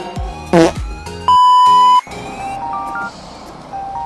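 A brief voice sound, then a loud, steady high beep lasting under a second that blanks out everything else, the typical censor bleep laid over a word. It is followed by a light electronic jingle of short beeping notes stepping upward.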